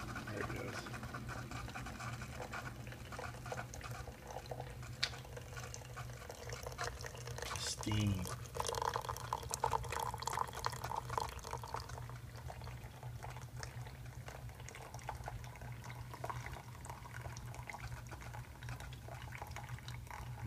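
Single-serve pod coffee brewer dispensing a thin stream of coffee into a stainless steel mug, the liquid trickling and splashing into the filling cup over a steady low hum.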